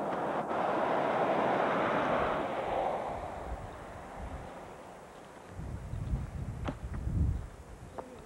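Wind on the camcorder microphone: a gust of noise swells and fades over the first few seconds, then low buffeting rumbles against the mic near the end.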